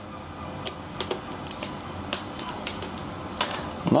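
Checkers pieces being moved and set down on a board by hand, a series of light, irregular clicks.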